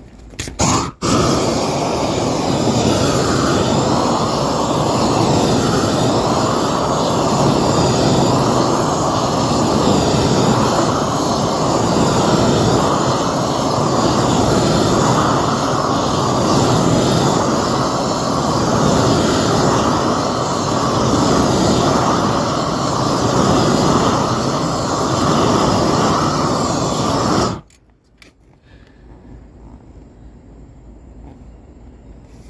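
Propane roofing torch burning with a loud, steady roar as it heats the underside of a torch-on cap sheet roll. It comes up to full flame about a second in and cuts off suddenly near the end.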